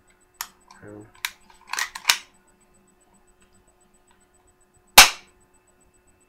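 Metal hammer and trigger of an M945 gas airsoft pistol clicking as they are worked by hand, then one loud, sharp crack from the pistol's action about five seconds in.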